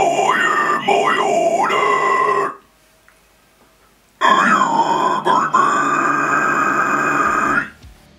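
A man's harsh death-metal growl vocals, recorded close on a studio microphone: two long held phrases, the first about two and a half seconds, then a short pause, the second about three and a half seconds.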